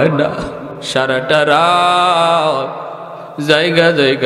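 A man chanting a Bengali supplication into a microphone in a drawn-out, tearful, sing-song voice. In the middle he holds one long wavering note for about a second, then goes back to speaking in the same chanting tone near the end.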